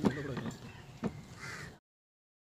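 Harsh bird cawing over low voices, with a sharp knock at the start and another about a second in; the sound cuts off abruptly near the end.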